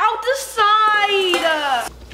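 A girl's voice: a short burst of speech, then a long drawn-out cry that falls slowly in pitch and cuts off just before the end.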